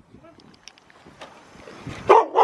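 Quiet outdoor background with a few soft, scattered taps, footsteps on a concrete path.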